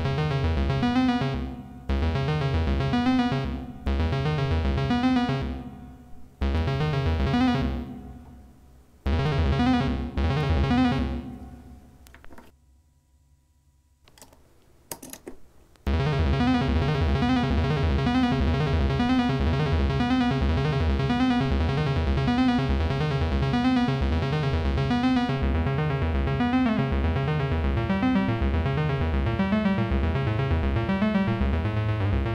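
Modular analog synthesizer playing a stepped, repeating note sequence driven by two daisy-chained Q179 Envelope++ modules in sequencer mode. For the first dozen seconds the sequence keeps restarting and fading away, then goes nearly silent for about three seconds with a couple of short blips. About halfway through it comes back as a steady, evenly repeating pattern.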